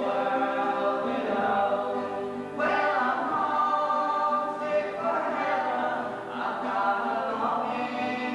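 A small gospel group of men's and a woman's voices singing long held notes in harmony, accompanied by acoustic guitars.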